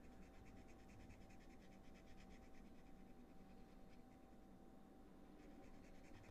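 Faint, quick scratching strokes of a Copic alcohol marker's nib across card stock as the ink is flicked in, over a steady faint hum; near silence overall.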